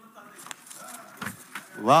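A pause in a man's speech with faint hall murmur and a couple of soft knocks, then near the end a loud, drawn-out exclamation of "wah" from a man, rising in pitch.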